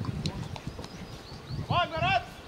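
Two short, high shouted calls from players on the field, in quick succession near the end, over a low background rumble.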